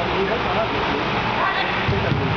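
Steady din in a large indoor sports hall, with faint, echoing shouts of players on the pitch, briefly about a quarter second in and again near the end.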